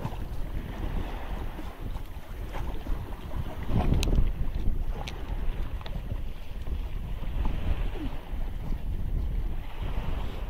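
Wind buffeting the microphone with a steady low rumble, over the splashing of a swimmer doing breaststroke in the sea. The sound gets louder about four seconds in, with a sharp click.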